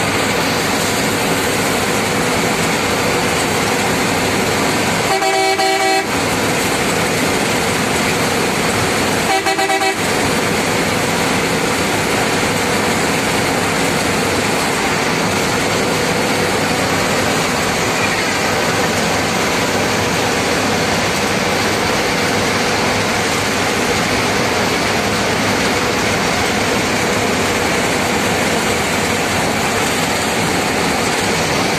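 Steady road and engine noise of a vehicle driving at speed on a highway, with two short horn honks, the first about five seconds in and the second about four seconds later.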